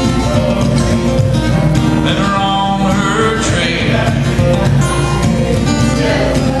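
Acoustic guitar playing a bluegrass tune written for the banjo.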